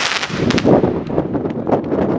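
P7745 firework battery's crackling stars going off: a dense cluster of sharp pops just after the start and again around half a second in, thinning to scattered crackles that die away near the end.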